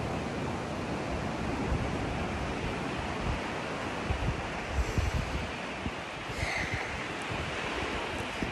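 Ocean surf washing steadily, with wind buffeting the microphone in low gusts a few seconds in.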